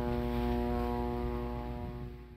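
A steady engine hum that holds one pitch, with a low rumble beneath it, easing slightly near the end.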